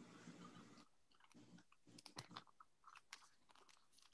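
Near silence on a video-call line, with a few faint, brief clicks.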